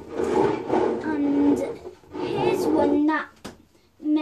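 A young girl speaking in two short phrases.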